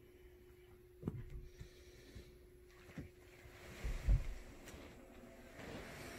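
Soft thumps and rustling as the person filming moves about with the phone, the loudest thump about four seconds in, over a faint steady hum.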